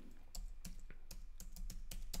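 Typing on a computer keyboard: a quick, irregular run of keystrokes, about six a second, as a word is typed in, starting about a third of a second in.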